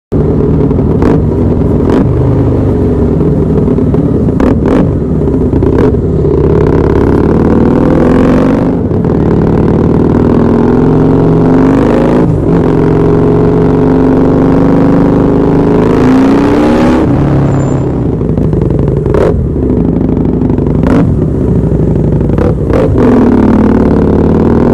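Husqvarna Nuda 900 parallel-twin motorcycle engine ridden hard in traffic, heard from the rider's position. The revs climb and fall again and again as it accelerates through the gears, with brief sharp breaks at the shifts.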